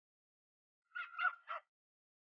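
A brief high-pitched vocal sound, three quick pulses about a second in, with silence around it.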